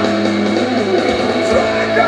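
Live rock band playing, with the electric guitar out front and no vocals.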